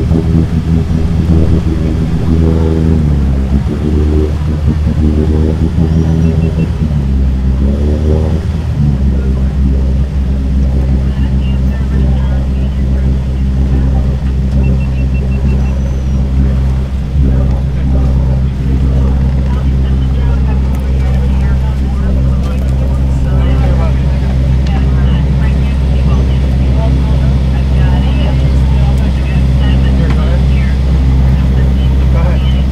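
Water taxi's engine running loud and steady, its pitch shifting twice in the first nine seconds as the throttle changes, then holding even.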